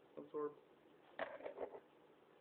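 A man's voice making short hums or murmurs without clear words, in two brief spells: one near the start and one a little past the middle.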